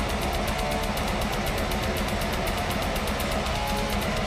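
Blackened death metal band playing live and loud: distorted electric guitars over very fast, steady drumming, with no let-up.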